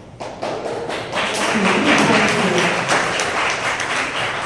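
Audience applauding, many hands clapping, starting just after the start, with some voices mixed in.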